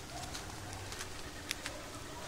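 Wet rainforest ambience: a low cooing bird call over a steady low rumble, with a few sharp ticks, the clearest about a second and a half in.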